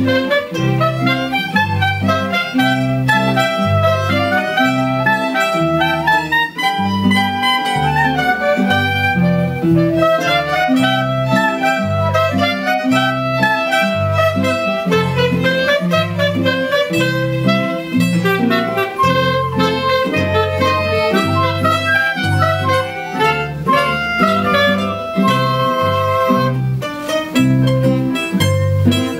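A small ensemble of clarinets, flute, acoustic guitars and violins playing a piece together, the woodwinds carrying the melody over an evenly timed plucked bass line.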